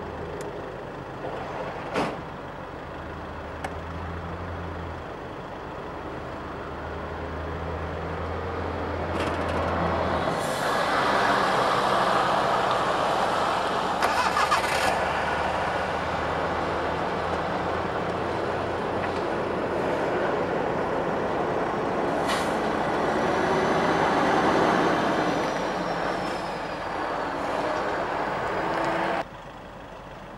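Motor vehicles running near the microphone: a low engine hum through the first ten seconds, then louder, steady traffic noise that swells and fades, cutting off abruptly about a second before the end.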